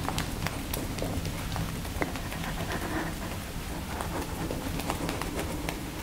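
Rapid, irregular light pattering and rustling from a person on a yoga mat shaking raised arms and legs loosely in the air, with many small taps.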